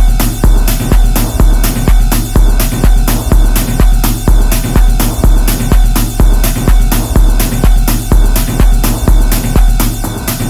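Driving peak-time techno: a steady four-on-the-floor kick drum at about two beats a second over a deep sub-bass, with dense electronic layers above.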